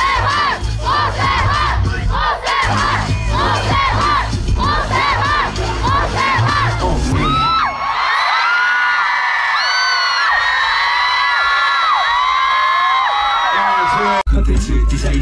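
Concert crowd of fans screaming and cheering, many high voices overlapping. A low bass beat runs under it for the first half and stops about halfway through, leaving the screaming on its own.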